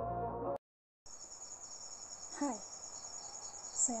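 Intro music cuts off about half a second in, and after a short silence a steady high-pitched pulsing chirp of insects runs on in the background. A woman's voice comes in briefly twice, midway and at the end.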